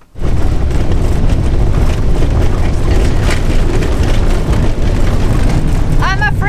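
Loud, steady cabin noise from a Fiat Ducato panel camper van on the move: engine and tyre road noise, heavy in the low end, starting suddenly with the cut to driving.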